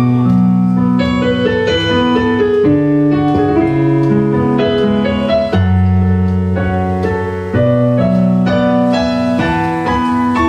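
Instrumental break in a live song: a keyboard with a piano sound plays sustained chords over held bass notes, changing every second or two, with no singing.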